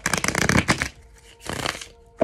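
A tarot deck being shuffled by hand: a rapid run of card flicks lasting about a second, then a second, shorter run of shuffling.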